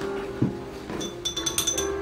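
Background instrumental music with steady held notes. A single knock sounds about half a second in, and a quick run of light, ringing clinks follows a little after one second in.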